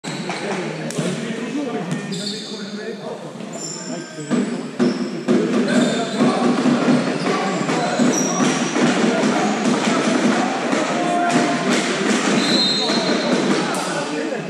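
Indoor handball game in a large sports hall: the ball bouncing on the court, sneakers squeaking in short high chirps, and indistinct shouts from players and spectators throughout.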